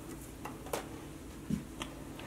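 A few light clicks and a soft thump from hands working paracord through a metal O-ring on a plastic braiding jig: a click a little before the halfway point, a thump about halfway, and another click shortly after.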